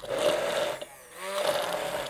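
Hand-held immersion blender running in a tall beaker of green herb mixture, in two bursts with a short drop in motor noise about a second in.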